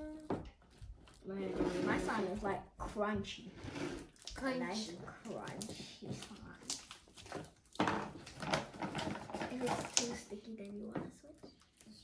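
Children's voices talking and babbling in short bursts, mixed with a few sharp clicks and handling noises.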